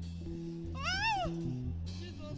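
A woman's high-pitched crying wail, one cry that rises and falls about a second in, over background music with sustained low notes.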